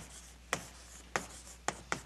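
Handwriting on a board: short sharp taps and strokes of the writing tool, about one every half second, as words are written up.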